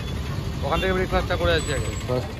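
A steady low rumble of idling vehicle engines in street traffic runs under a voice that talks briefly in the middle.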